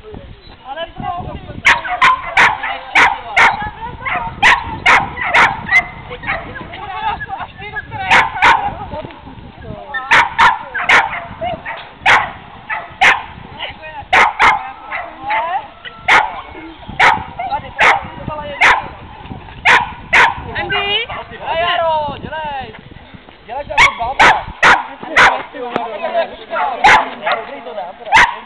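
Dog barking repeatedly in runs of several quick, sharp barks, with short pauses between the runs.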